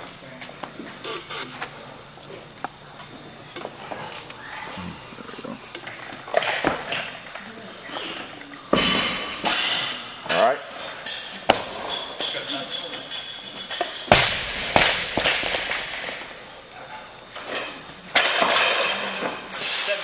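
Weightlifting gym sound: background voices and clinks and clanks of barbells and plates, with several louder noisy bursts about halfway through and near the end.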